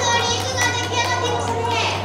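A young child's high-pitched, drawn-out vocalising, over a steady low hum.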